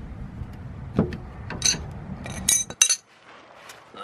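Wrench and metal fuel-line fitting clinking and scraping as the line is undone from an inline fuel filter. There are a few sharp clinks, bunched near the three-second mark, over a low rumble that stops just before then.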